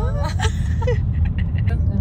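Steady low road and engine rumble inside a moving car's cabin, under a voice in the first second and a few light clicks after it.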